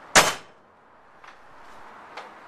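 A short length of railroad rail, a makeshift anvil, set down on a metal table: one heavy metal clunk that dies away within half a second, then a faint tick about a second later.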